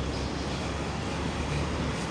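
Steady outdoor city background noise: a low, even hum of distant traffic with no distinct events.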